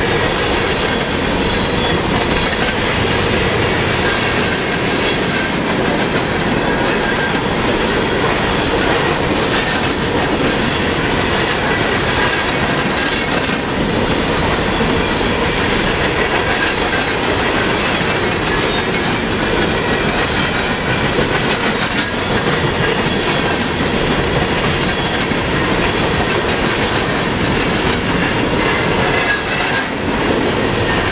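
Empty coal hopper cars of a freight train rolling past at speed: a steady, unbroken noise of steel wheels running on the rails.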